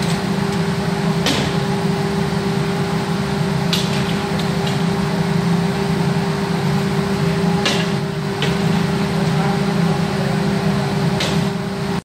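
Automatic glass cutting machine running with a steady low hum and a held tone above it, with about five short sharp clicks and knocks as a glass sheet is handled on its table.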